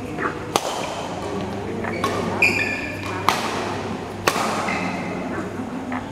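Badminton rackets striking a shuttlecock during a rally: four sharp cracks about a second apart, each echoing briefly in a large hall. A short high squeak, typical of a sports shoe on the court floor, comes just before the middle.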